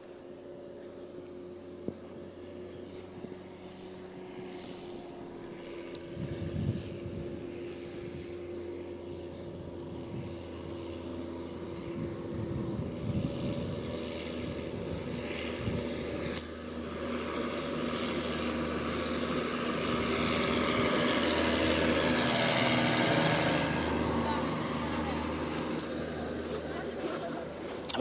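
A passing engine: a steady hum that swells over several seconds to a peak a little after the two-thirds point, then fades.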